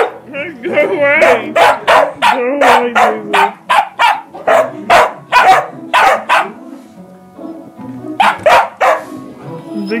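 A dog barking in a rapid series of short, sharp barks, about two to three a second, pausing for about a second near the seven-second mark, then giving a few more barks. This is play barking at a person who is teasing it.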